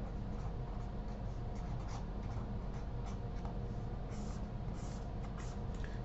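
A pen scratching and scribbling across paper as words are written out and then underlined, in short strokes. A steady low hum runs beneath it.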